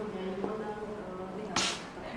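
A man's drawn-out voice, held on a steady low pitch through the microphone, with a short sharp hiss about one and a half seconds in.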